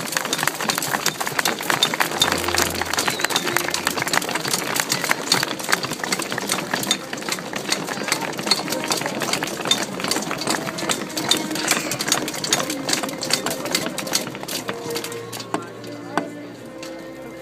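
Dense, continuous clatter of many weapons knocking on shields and armour from massed medieval reenactment fighters, with crowd voices mixed in. It thins out near the end.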